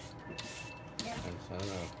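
Hand shredder scraping a peeled green papaya into thin strands, in repeated quick raspy strokes.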